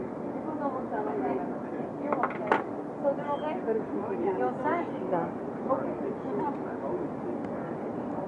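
Restaurant chatter: several voices talking at once, none standing out, with a sharp click about two and a half seconds in.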